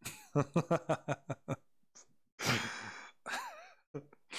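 A man laughing in a quick run of short voiced bursts, then a long breathy exhale like a sigh, and a short wavering hum near the end.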